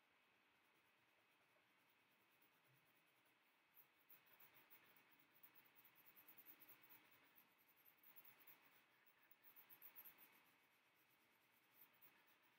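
Faint scratching of a coloured pencil shading on paper in short, irregular strokes, starting about four seconds in.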